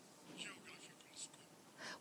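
Near silence: faint room tone during a pause in a speech, with a few soft, brief sounds.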